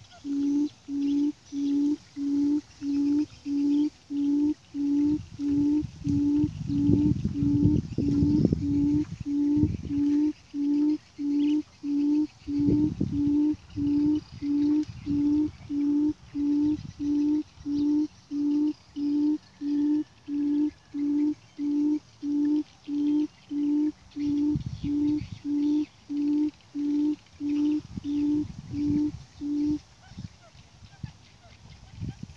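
Buttonquail lure call played back on a loop: a low hooting note repeated at a perfectly even pace, about one and a half times a second, starting and stopping abruptly. A few bursts of low rumbling noise come through, the longest about a third of the way in.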